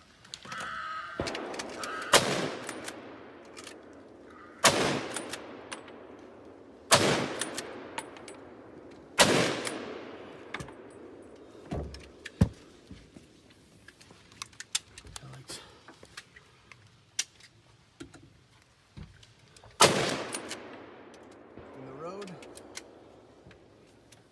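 Scoped hunting rifle fired five times, four shots about two and a half seconds apart and then a fifth about ten seconds later, each blast echoing and dying away over a couple of seconds. Softer sharp clicks and knocks fall between the shots.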